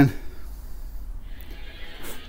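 The end of a man's voice dropping in pitch right at the start, then a low steady hum and faint hiss of workshop room tone.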